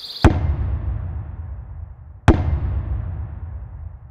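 Two deep cinematic boom hits about two seconds apart, each a sharp strike followed by a low rumble that fades away: intro title sound effects.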